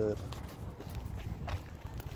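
Footsteps on gravel, with a few faint crunches.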